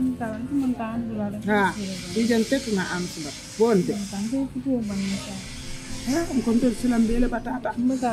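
A woman speaking in conversation, with a steady high hiss behind her voice that comes in after a second or so, drops out briefly in the middle and returns.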